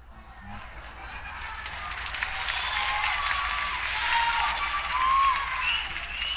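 Concert audience cheering, clapping and whistling, swelling over a few seconds and peaking near the end, over a steady low hum.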